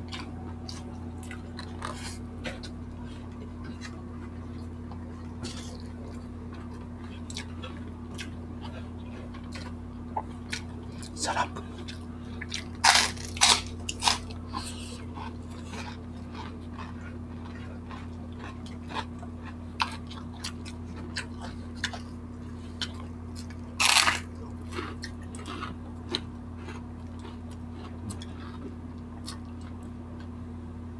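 Close-miked eating sounds: chewing and wet mouth clicks, with a few loud crunches of crispy fried food about 13 to 14 seconds in and again around 24 seconds. A steady low hum runs underneath.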